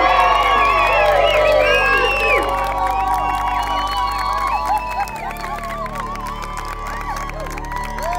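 A crowd of wedding guests cheering and whooping, densest in the first two or three seconds and thinning out after, over background music with sustained low notes.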